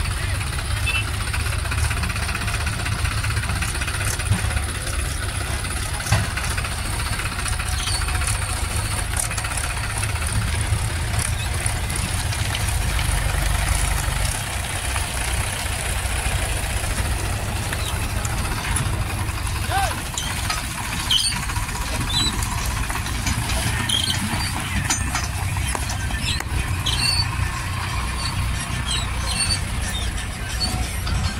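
Sonalika DI 740 tractor's diesel engine running steadily with a low rumble while it works the hydraulic tipper, raising a trailer full of soil and tipping the load out.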